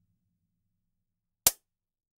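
A single short, crisp hit of a drum sample, a note auditioned in a MIDI drum editor, about one and a half seconds in. A faint low tone fades out at the start.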